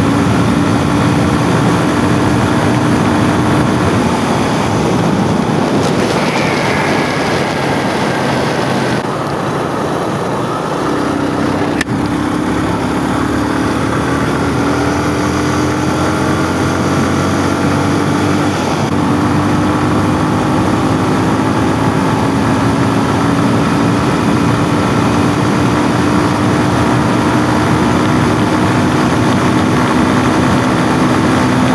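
Yamaha motorcycle engine running at highway speed, with wind rushing over the bike. The engine note drops about four seconds in, eases off around ten seconds, then climbs slowly again as the bike accelerates, with a single click near twelve seconds.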